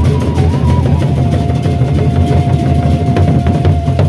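Gendang beleq ensemble playing: the large Sasak two-headed barrel drums struck with sticks in a dense, fast rhythm, with a steady held note sounding above the drumming from about a second in.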